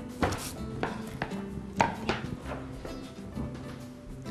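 A metal baking tray being handled: a few sharp knocks and clatters in the first two seconds, over steady background music.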